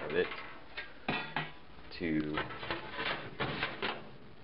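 Pieces of sheet metal cut from a filing cabinet clattering and knocking against each other as they are handled, with several sharp metallic knocks.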